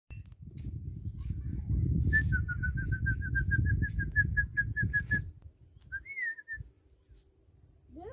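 Wind rumbling on the microphone for about five seconds. Over it comes a quick run of about twenty short whistled notes at one pitch, some six a second for about three seconds, then a single whistle that rises and falls.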